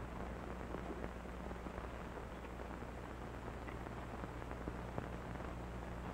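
Steady hiss and low hum of an old optical film soundtrack, with a few faint scattered ticks.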